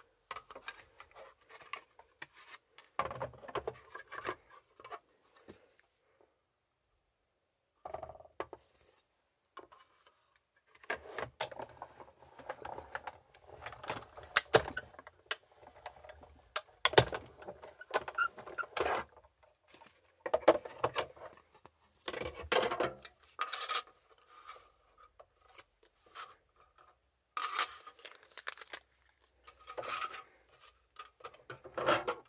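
Sizzix Big Shot die-cutting machine in use: acrylic cutting plates clattering as they are stacked on the magnetic platform, then the handle cranked to feed the sandwich through the rollers, cutting oval shapes from cardstock with metal dies. It comes as irregular clicks and knocks, the busiest stretch in the middle, with the plates handled again near the end.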